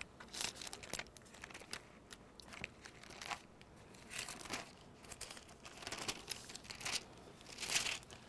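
Thin Bible pages being leafed through and turned, a string of soft papery rustles and crinkles.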